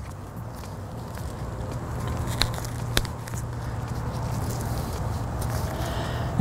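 Preformed splice-shunt rods being split and worked around a stranded conductor by gloved hands: low rustling and handling noise, with two sharp clicks about two and a half and three seconds in, over a steady low hum.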